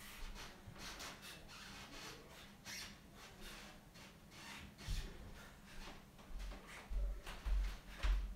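Faint breathing and rustling of body and clothing against a floor mat during repeated crunches, with a few low thumps in the second half.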